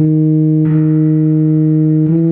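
Euphonium melody played back from notation, holding one long steady note for the whole two seconds, with accompaniment thickening the sound about two-thirds of a second in.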